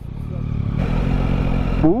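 Yamaha Tracer 9 GT motorcycle's three-cylinder engine running at low revs as the bike rides off slowly, heard from the rider's seat, with a hissing noise building from about a second in.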